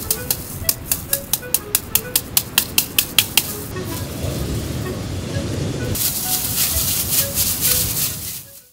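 Cucumbers in a plastic bag being smashed with rapid, even blows, about four or five a second, which stop about three and a half seconds in. Near the end the bag rustles loudly as it is shaken to mix in the pickling seasoning.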